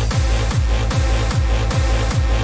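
Hardstyle dance music with a heavy distorted kick drum on every beat, each kick dropping in pitch, and synths over it. The kick has just come in after a rising build-up.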